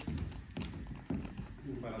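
Footsteps on a hard stage floor: a few steps about half a second apart as a person walks across.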